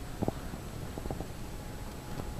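Footsteps on a concrete floor, a few irregular knocks, over a low rumble of handheld-camera handling noise.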